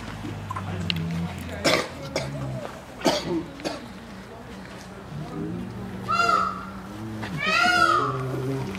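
A man coughs twice early on; then, about six and seven and a half seconds in, a brown bear gives two loud, high, rising-and-falling whining calls, begging for the apples it is not being given.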